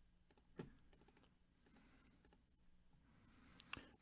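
Near silence broken by a few faint computer mouse and keyboard clicks: one soft knock about half a second in, scattered light ticks, and a quick cluster of clicks just before the end.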